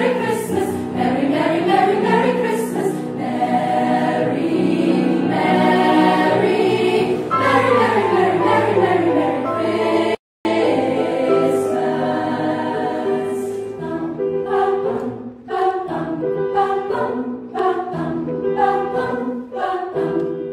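A choir of many voices singing together, with sweeping rising and falling lines early on. A brief dropout comes about halfway through, after which the singing turns to shorter, clipped chords.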